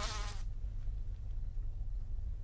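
Cartoon sound effect of a housefly buzzing, its pitch wavering. It drops away about half a second in, leaving a faint low hum.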